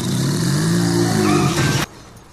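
A loud motor hum with a hiss over it. It rises and then falls in pitch and cuts off suddenly near the end.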